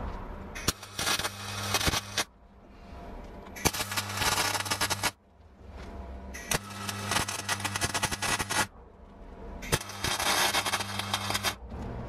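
MIG welder laying short welds on steel box section, its arc crackling and sputtering in four runs of about one and a half to two seconds each, with brief pauses between.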